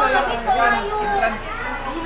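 Speech only: several voices talking over one another at once.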